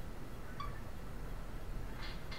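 Quiet room tone with a steady low hum, and one faint brief sound about half a second in.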